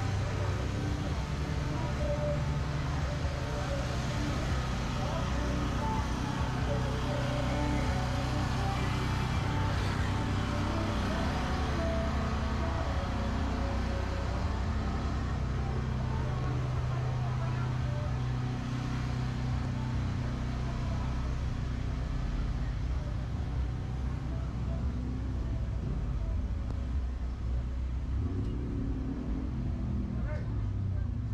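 Street traffic sound: a motor vehicle engine running steadily, with people talking in the background.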